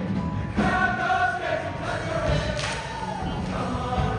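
Show choir singing in full voice with live band accompaniment; the voices come in on a new held line about half a second in.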